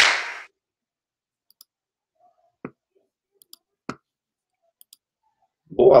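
Intro music fading out in a brief sweep, then near silence broken by a few short, faint clicks, the two sharpest about two and a half and four seconds in.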